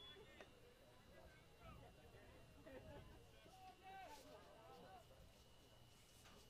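Near silence, with faint distant voices chattering now and then.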